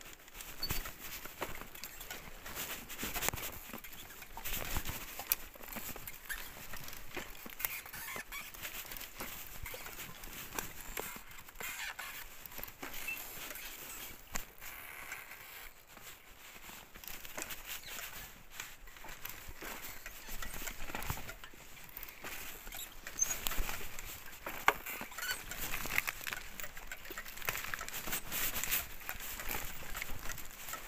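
Recumbent trike rolling down a rough dirt trail: tyres crunching over stones, twigs and leaf litter while the frame and chain rattle, in a continuous irregular crackle with a few brief high squeaks.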